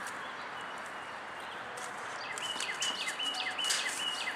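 A songbird calling in a quick run of short notes, about four a second, each dropping in pitch, starting about two seconds in over a steady outdoor hiss. Light rustling of a plastic soil bag goes with it.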